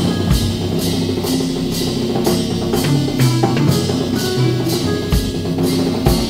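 Drum kit played with soft mallets, with strokes at a steady pulse of about two to three a second over low sustained pitched notes that move from note to note, like a bass line.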